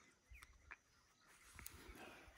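Near silence, with a few faint, short chirps in the first second.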